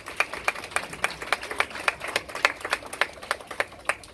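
A small group of people applauding by hand, the separate claps clearly distinct rather than blended into a roar.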